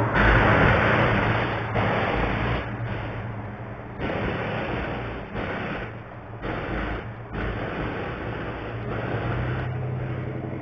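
A car driving past on the street, heard through a security camera's microphone: loud at first, then fading away over the first three or four seconds. A steady low hum stays under the quieter stretch that follows.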